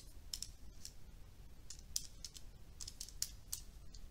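Calculator keys being pressed: a faint, irregular run of about ten light clicks.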